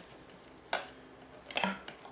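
Handling noises from a Deltec acrylic media reactor being taken apart: one sharp click about three-quarters of a second in, then softer knocking and rubbing near the end as its parts are lifted out and set down.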